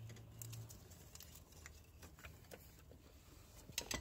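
Faint, scattered light clicks and taps of hands and metal parts being handled as the timing belt is worked off the engine's sprockets and tensioner, with a slightly louder short cluster of clicks near the end.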